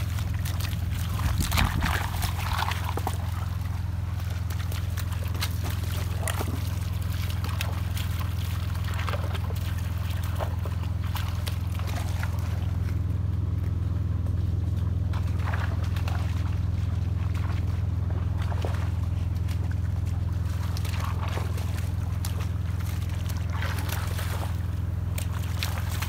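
Water splashing and sloshing in a shallow rocky creek as a dog paws and wades through it, loudest in the first few seconds. A steady low hum runs underneath.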